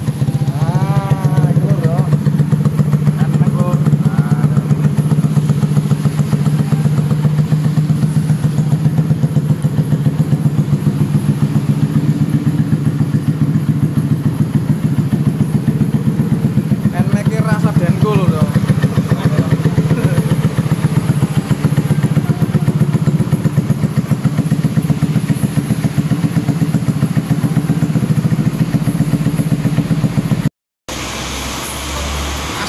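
Modified Yamaha NMax scooter's single-cylinder engine idling steadily through an aftermarket brong (open) exhaust, with a fast, even putter that does not rise or fall.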